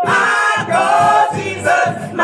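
Gospel choir singing, with long held notes.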